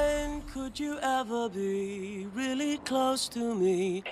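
A man's voice singing a slow melody in long held notes, the tune stepping down in pitch.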